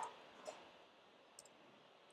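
A few faint, scattered computer keyboard keystrokes against near silence, as code is typed.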